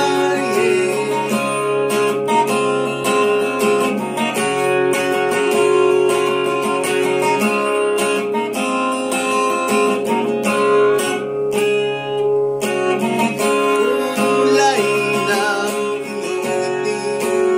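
Acoustic guitar strummed in a steady run of chords, an instrumental stretch of a pop-rock song. A short sung phrase may come in right at the start and again near the end.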